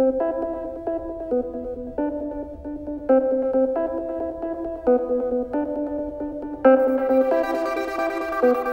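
Instrumental song intro on an electronic keyboard: a repeating figure of sustained chords that change about every half second to a second. Near the end more instruments join and the sound turns fuller and brighter.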